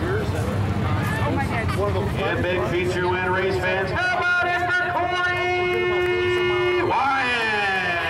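Voices of people gathered around. About halfway in, a steady pitched tone holds for about three seconds, then slides down near the end.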